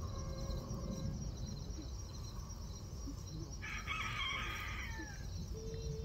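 A rooster crows once, about three and a half seconds in, for about a second and a half, dropping in pitch at the end. A steady low rumble runs underneath.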